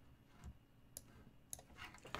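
Near silence broken by two faint, sharp clicks about half a second apart, near the middle, as a rook move is entered in an online chess game.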